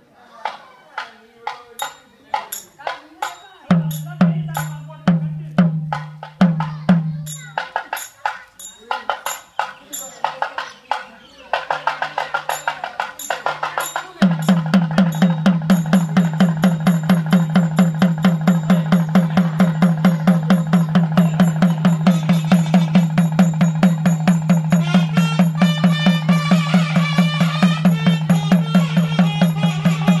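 Temple drum beaten by hand: separate strokes with short pauses at first, then from about halfway a steady fast beat of about four or five strokes a second.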